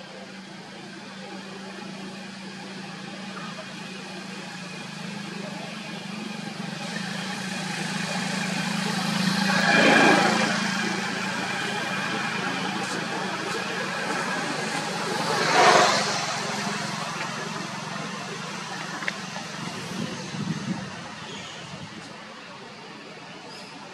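Motor vehicles passing by: a steady low hum that swells into two louder pass-bys, one about halfway through and another a few seconds later.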